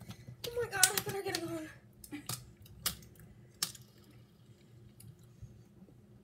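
A drawn-out vocal sound falling in pitch about half a second in, then a handful of sharp, separate clicks and taps from hands handling things on a kitchen countertop.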